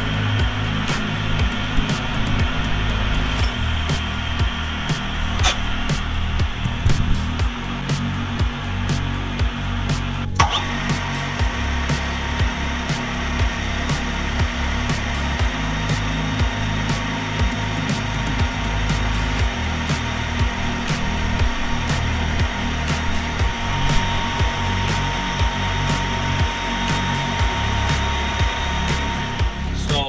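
Metal lathe running while its cutting tool faces off the end of a stainless steel bar, a steady machine-and-cutting noise, mixed with background music.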